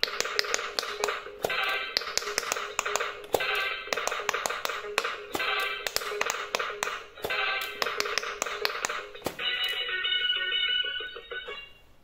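Kuromi V4 Quick Push electronic pop-it game playing its electronic tune, with rapid clicks of its silicone buttons being pressed. About nine seconds in the clicks thin out while the tune carries on, then it drops away near the end.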